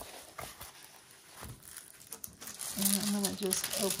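Plastic film crinkling and crackling as a rolled diamond painting canvas is handled and unrolled.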